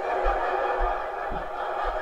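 A theatre audience laughing together at a joke, a steady wash of laughter.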